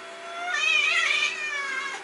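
Domestic cat yowling: a low, steady moan swells about half a second in into a loud, wavering, higher yowl that lasts over a second and falls away near the end. It is the angry yowl of a cat that wants to be let outside.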